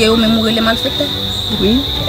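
Crickets chirring steadily in the background, a constant high-pitched trill under voices talking.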